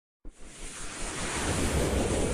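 A rushing whoosh sound effect from an animated title intro, starting about a quarter second in and swelling steadily louder.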